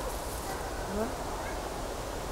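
A woman's voice making a couple of brief wordless sounds that slide in pitch, over a low steady rumble.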